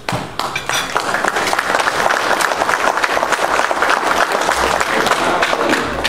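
Audience applauding: many hands clapping, starting suddenly and building over the first second into steady applause.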